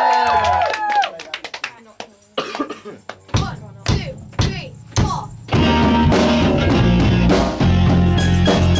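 Falling 'ooh' whoops die away, then drumsticks click four times about half a second apart, counting in the band. A rock band of drum kit and guitars starts playing about five and a half seconds in.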